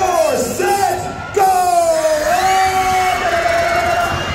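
A man's voice through a microphone and PA, drawn out in long held shouts that slide in pitch, over the noise of a crowd.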